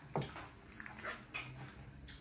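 Wooden dal masher twirled between the palms in a pot of simmering liquid, making a few short, soft scraping and squeaking sounds against the pot.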